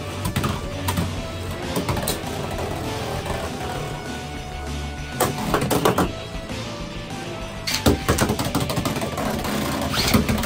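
Background music over the clatter of Beyblade X spinning tops in a plastic stadium: sharp knocks in the first two seconds, a rattling burst around the middle, and another run of clicks and knocks near the end.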